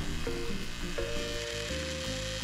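Electric centrifugal juicer running at medium-high speed with a steady motor whir, under light background music whose notes change every half second or so.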